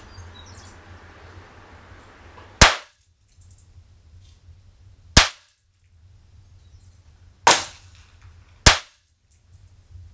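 Four single shots from a Sig Sauer TTT 1911 .45 pistol, a couple of seconds apart at first, the last two closer together.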